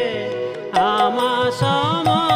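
Kirtan music: a harmonium melody over mridanga drum strokes whose low tones glide up, with small hand cymbals clicking in time.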